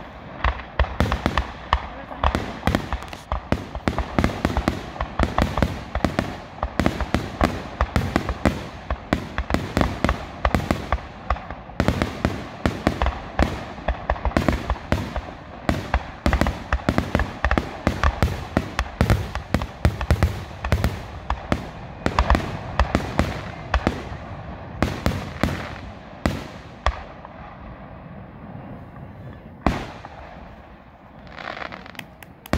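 Fireworks display: a rapid, continuous barrage of aerial shell bursts and crackle, thinning out and growing quieter over the last few seconds.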